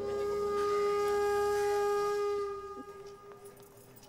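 Background film score: a wind instrument holds one long, steady note, which fades out about three seconds in.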